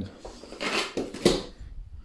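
Rustling and a couple of light knocks as objects are handled and put down, loudest about a second in, then quiet.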